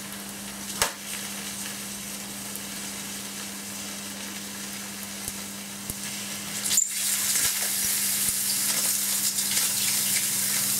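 Overcharged D-cell batteries sizzling and hissing as they vent smoke under about 72 V AC, over a steady low hum. A sharp crack comes about a second in, and another just before seven seconds, after which the hissing gets louder.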